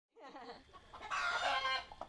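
Domestic chickens calling, with a louder, longer call from about one second in.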